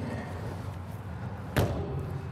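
A horse trailer's aluminum window panel slammed shut onto its slam latch: one sharp bang about one and a half seconds in, with a brief ring after it.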